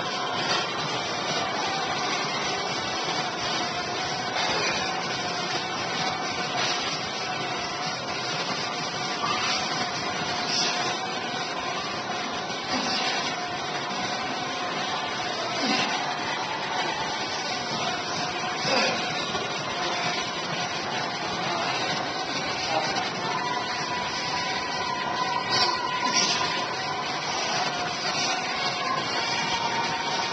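Steady rushing background noise with a faint steady hum and a few brief knocks.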